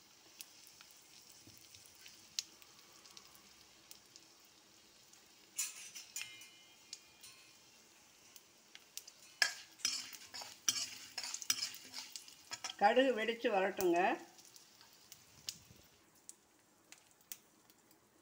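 Whole spices with dried red chillies frying in oil in a metal kadai: a faint, steady sizzle. A metal ladle stirs and scrapes through them, with a burst of crackling about five seconds in and a denser run of crackles and clicks a few seconds later.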